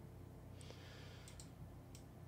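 Near silence with a few faint computer mouse clicks in the second half, after a soft brief hiss.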